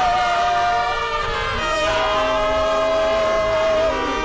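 A church choir and a woman lead singer singing a worship chorus with trumpet and saxophone accompaniment. The notes are long and held; one sustained note runs through the second half.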